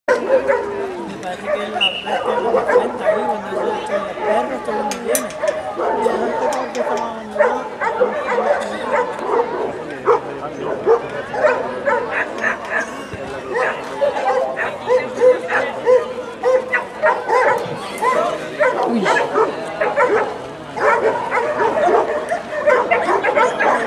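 Dogs barking repeatedly over people talking.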